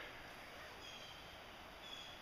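Quiet outdoor background with a faint, thin high-pitched note about a second in and another near the end.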